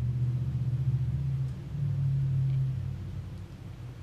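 A low, steady droning rumble, louder for about the first three seconds and then fading.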